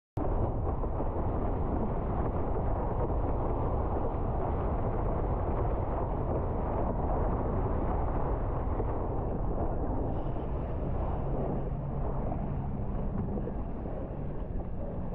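Wind buffeting an action camera's microphone while windsurfing, mixed with the rush of water along the board. It cuts in suddenly at the start, runs steadily and eases a little near the end.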